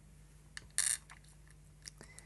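Small pieces of scrap glass being handled and set down: a few light clicks and one short crisp rattle a little under a second in.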